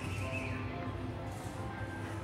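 Shop background music playing, with steady held notes over a low pulse. A brief high sliding sound rises and falls right at the start.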